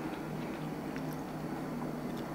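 A person quietly chewing a mouthful of steamed cauliflower, with a few faint small crunches, over a steady low hum.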